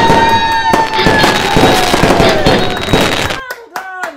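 Fireworks sound effect, crackling bangs under a long held cheering whoop, cutting off suddenly about three and a half seconds in; hand clapping mixed in.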